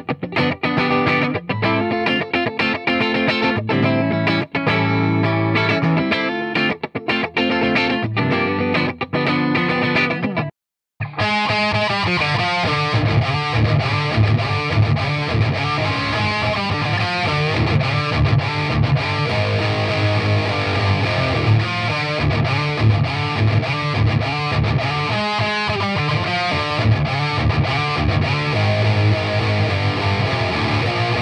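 Distorted electric guitar played through a Hughes & Kettner GrandMeister 40 head into a 2x12 cabinet loaded with two Celestion Vintage 30 speakers, picked up by a microphone at the cabinet. It starts as a picked riff with clear gaps between the notes, breaks off in a brief dead silence about ten seconds in, then resumes as a denser, more sustained passage on a gold-top Les Paul-style guitar.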